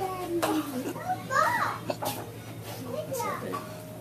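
A girl's high-pitched, excited squeals and cries without words: she is reacting in joyful surprise to her father's unexpected return.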